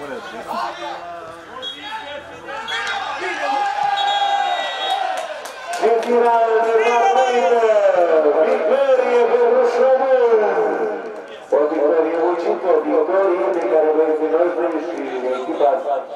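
Voices shouting and cheering in long, loud yells that slide up and down in pitch, celebrating a goal just scored; the loudest yelling comes from about six seconds in, breaks off briefly, then picks up again.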